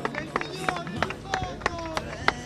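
Indistinct background voices of people talking nearby, broken by a quick run of sharp clicks and knocks from the handheld camera being moved and handled, with a low steady hum coming in about halfway through.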